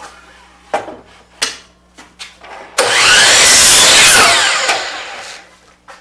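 A few light knocks as the wooden 1x6 board is set against the fence, then, about three seconds in, a DeWalt sliding compound miter saw starts and cuts through the board for about two seconds, the sound dying away as the blade spins down.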